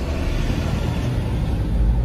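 Road and engine noise inside a moving car's cabin: a steady low rumble with a hiss over it, swelling briefly near the end.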